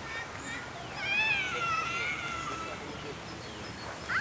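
A single long, wavering high-pitched animal call about a second in, lasting nearly two seconds, over a steady outdoor background hush.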